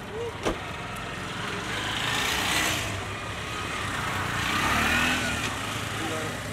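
Street traffic: a sharp knock about half a second in, then cars passing twice, their tyre and engine noise swelling and fading over a low steady hum.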